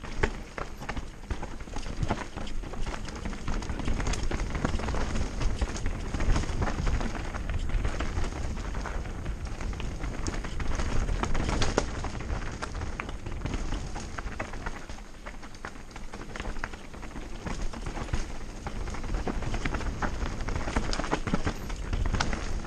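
Mountain bike riding fast down a rocky dirt singletrack: tyres crunching over stones and roots, with a constant clatter of knocks and rattles from the bike over the bumps and wind rumbling on the microphone.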